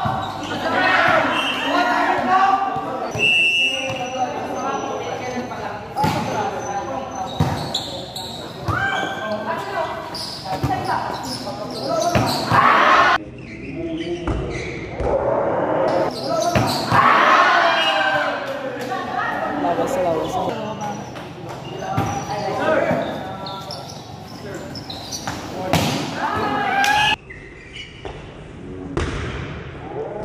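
A volleyball rally: sharp hits as the ball is struck and lands, with players and spectators shouting and cheering throughout, in a reverberant covered court.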